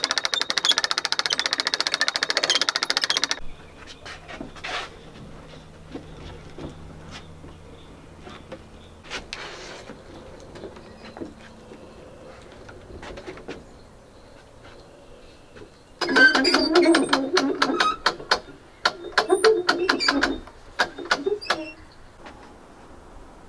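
Hand-cranked two-speed winch with its ratchet pawl clicking rapidly as it is cranked, hoisting a log in lifting straps. After a quieter stretch, a second, more irregular run of clicks and knocks comes near the end.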